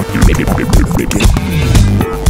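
Electronic dance music played on iPad DJ turntable apps, with turntable-style scratching: quick pitch sweeps up and down as a hand pushes the virtual record back and forth.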